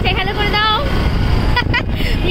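Steady low rumble of wind on the microphone and road noise from a moving motorcycle, with a high voice talking over it twice.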